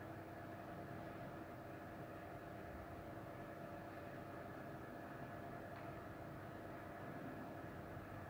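Faint, steady mechanical hum with a few constant tones, like building machinery running.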